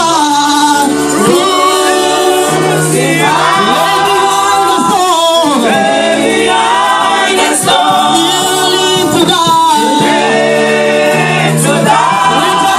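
A church congregation singing a gospel worship song together. Voices hold long, wavering notes over steady low instrumental accompaniment.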